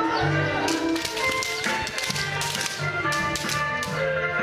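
Bamboo kendo swords (shinai) clacking in a rapid run of sharp strikes over background music.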